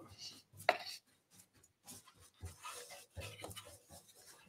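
Faint scraping and rubbing of a wax brush worked over a painted wrought iron rack, with one sharp tap a little under a second in.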